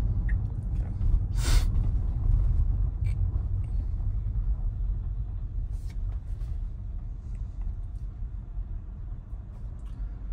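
Low road and tyre rumble inside a Tesla's cabin on slick, icy roads, slowly fading as the car slows toward a stop. A brief hiss about a second and a half in.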